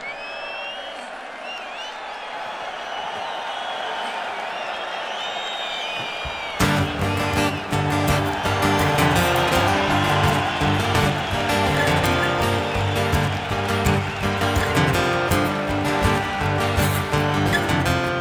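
Stadium crowd cheering and whistling, then about six and a half seconds in a rock band comes in all at once with strummed acoustic guitars, bass and drums.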